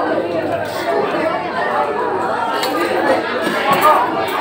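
Many people talking at once in a large room, a steady murmur of overlapping voices with no single speaker standing out: the chatter of diners at a busy buffet.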